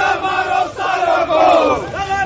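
A crowd of men shouting at once in a scuffle, several loud raised voices overlapping.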